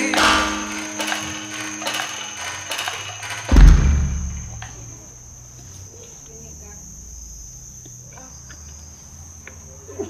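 The music tails off with a deep low boom about three and a half seconds in. Then insects chirr steadily in a high, thin tone.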